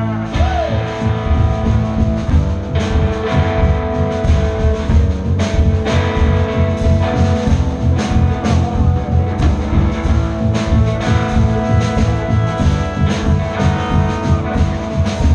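A live blues band playing an instrumental passage: electric guitar, bass guitar and drum kit keep a steady beat under long held notes.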